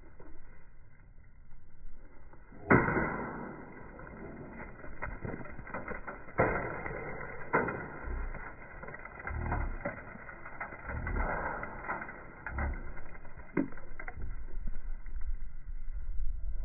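A bat smashing thrown objects: one sharp crack about three seconds in, two more hard hits a few seconds later, then scattered smaller knocks.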